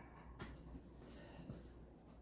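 Near silence: a low steady room hum, with a faint click about half a second in and a fainter one about a second later.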